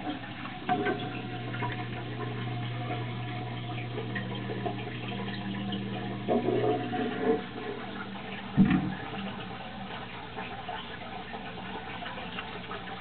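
Water running and splashing in a turtle tank, with a steady low hum that stops about nine seconds in. A few knocks come around six to seven seconds in, and a single thump just before nine seconds.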